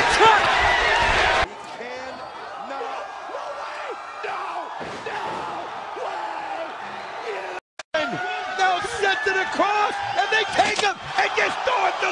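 Wrestling broadcast audio: voices over arena noise, with occasional sharp thuds. The sound changes abruptly about a second and a half in, drops out for a moment near eight seconds, then comes back louder.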